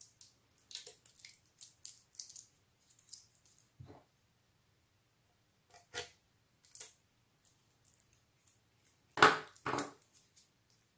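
Utility knife slicing through excess tape: a run of short scratchy cuts in the first few seconds. Then scattered knocks of handling on a wooden workbench, with two louder knocks about half a second apart near the end as things are set down.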